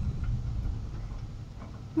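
Low, steady rumble of a car's engine and cabin noise, heard from inside the car recording the dashcam footage as it sits close behind a stopped pickup.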